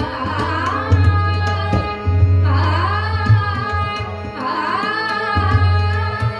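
A woman singing a bhajan with harmonium and tabla accompaniment: her voice swoops up and down in pitch over steady harmonium tones, while the tabla plays sharp strokes with a deep booming bass drum.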